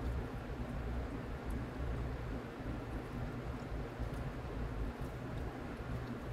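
Close-up chewing and mouth noises from eating pizza rolls, with a few faint ticks, over a steady low rumble of room noise.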